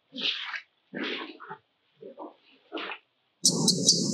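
Macaque vocalising in four short, harsh bursts. Near the end a steady high hiss and a low hum start abruptly.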